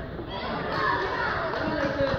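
Children's voices calling and chattering across a football pitch, mixed with nearby talk.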